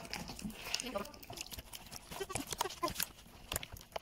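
A hand beating and slapping thick semolina batter in a bowl, making irregular wet slaps and squelches. Faint voices can be heard in the background.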